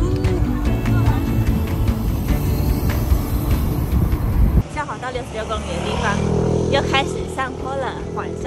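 A car's low road rumble, heard from inside the cabin, with music playing over it. About four and a half seconds in it cuts abruptly to a quieter passage with a steady hum and repeated high chirps.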